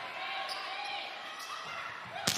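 Crowd noise in an indoor arena during a volleyball rally, with two faint ball contacts about half a second and a second and a half in.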